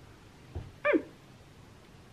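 A soft knock, then about a second in a single short, high cry that falls steeply in pitch.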